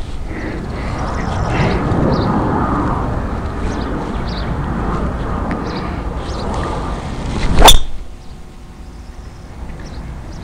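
A golf driver strikes a ball: one sharp crack with a brief metallic ring, about three-quarters of the way through, over a steady rushing background noise that drops away just after the hit.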